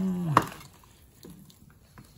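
A person's drawn-out wordless "ooh" of delight, held on one pitch and dropping as it ends under half a second in, cut off by a single sharp click; then only faint room sounds.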